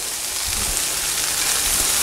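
Chicken breasts and pancetta frying in hot oil in two pans, a steady even sizzle.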